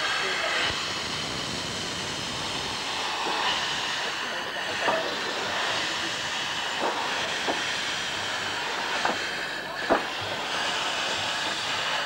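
Miniature 15-inch-gauge steam locomotive letting off steam in a steady, loud hiss, with steam blowing from its open cylinder drain cocks, and a few sharp clicks of metal over it, the loudest near ten seconds in.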